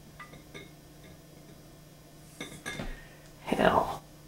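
Light metallic clicks and taps on the aluminium dome of a Van de Graaff generator as it is handled, each ringing briefly. Near the end comes a louder, busier clatter, the loudest sound here, over a steady low hum.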